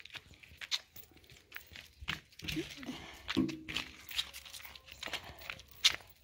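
A dog vocalising briefly from about two and a half to four seconds in, with light clicks and scuffs scattered around it.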